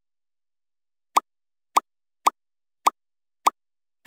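Five short, identical pop sound effects, each a quick upward-gliding 'plop', spaced about half a second apart and starting about a second in. Each pop marks a check mark appearing on a comparison chart.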